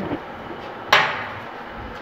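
A single sharp knock about a second in, a hand tool or other object set down hard on a hard surface while things are cleared away from the welding area.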